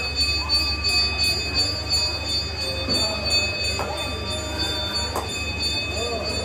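Temple bell ringing steadily during the puja, its high ringing tones held over a constant low electrical hum, with faint murmured voices.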